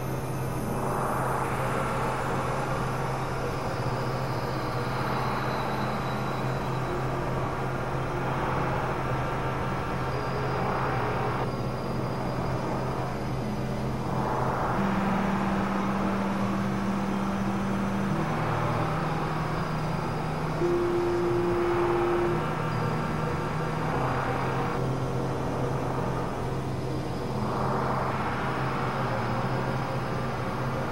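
Experimental synthesizer drone: a steady low tone runs under a noisy wash that swells and drops away a few times. Short held notes above it change every second or two in the second half.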